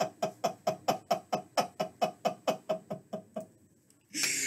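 A person laughing: a long run of quick, rhythmic 'ha' bursts, about six a second, growing weaker and stopping about three and a half seconds in.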